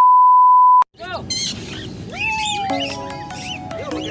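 A loud, steady 1 kHz test-tone beep of the kind played with TV colour bars, held for just under a second and cut off sharply. After a brief gap, music starts about a second in.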